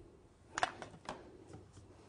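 Light clicks and soft rustles of combs and fingers working synthetic hair on a wig, a quick cluster of small strokes a little after the start and then a few fainter ones.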